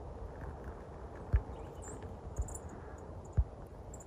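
Footsteps on a gravel road: soft, dull steps about once a second over a low, steady background rumble.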